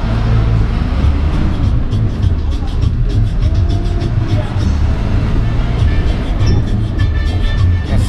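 Low rumble of a moving bus's engine and road noise heard from inside the cabin, with music that has a steady beat and indistinct voices over it.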